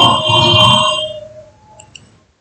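A ringing bell-like chime that comes in loud with several high ringing tones at once, then dies away over about a second and a half. A couple of faint short blips follow near the end.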